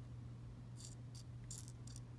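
Faint, high-pitched clicks of small glass rhinestones tapping against each other and a plastic tray as one is picked up with a pickup pen, a handful of clicks in the second half. A steady low hum runs underneath.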